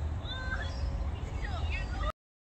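A few faint, short animal calls that glide up and down in pitch, over a steady low rumble; the sound cuts off suddenly at the end.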